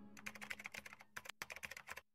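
Faint rapid clicking, about ten clicks a second, over a low steady hum; both cut off suddenly at the end.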